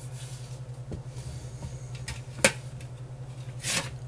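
A stainless-steel pot and its locking strainer lid being handled, with faint rubbing and one sharp metal click about two and a half seconds in, over a steady low hum.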